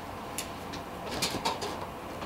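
A few soft clicks and rustles from fly-tying tools and materials being handled at the vise, over low room noise.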